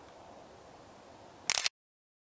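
Faint steady hiss, then about one and a half seconds in a quick cluster of sharp clicks from handling the camera, after which the sound drops out to dead silence.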